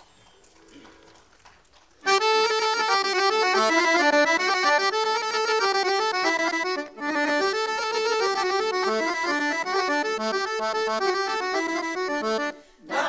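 Piano accordion playing a brisk Bulgarian folk tune. It starts suddenly about two seconds in after near silence, with a brief break a little past halfway.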